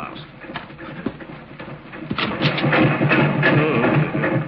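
Radio-drama sound effect of a town water pump house's machinery running: a steady low hum with a rapid rhythmic clatter of about four or five beats a second. It comes up loud about two seconds in, the 'noise' that drowns out talk.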